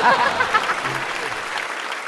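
Studio audience applauding, with a burst of laughter at the start; the clapping gradually dies away.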